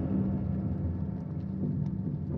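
Experimental ambient music: a low, steady rumbling drone with a held deep tone and a few faint ticks, built from processed field or contact-microphone recordings.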